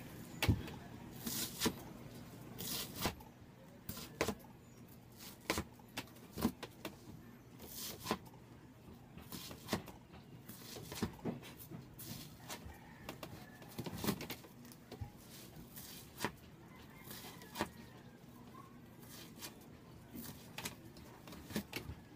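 Scattered light clicks and knocks at irregular intervals, roughly one every second, from hands working at an upholstery chair's foam backrest and wooden frame.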